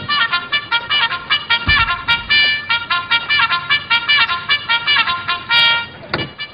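Bugle playing a call of many quick, short notes, ending on a longer held note near the end.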